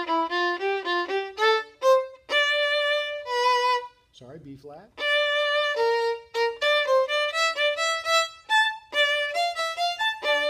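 A single violin playing a quick passage of short bowed notes with a few longer held notes. The playing breaks off briefly about four seconds in.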